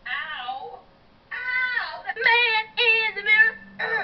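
A high-pitched girl's voice singing in short phrases with pitch slides, after a brief gap about a second in, played through a television's speaker.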